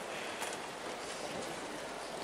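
Steady background hiss of room noise in a large room, with a faint click about half a second in.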